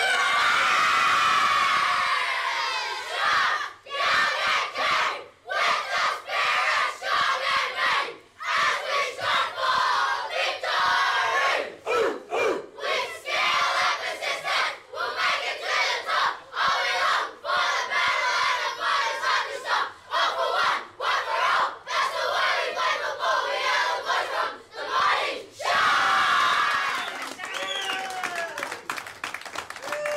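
A team of boys about ten years old shouting together in loud bursts with short breaks. Near the end it dies down to scattered voices.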